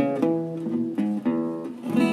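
Acoustic guitar played in a short phrase of picked and strummed chords, a new chord sounding every quarter to half second.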